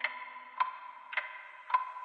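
Clock-like ticking in a slowed pop track, evenly spaced at just under two ticks a second, over a faint held high tone with no other instruments.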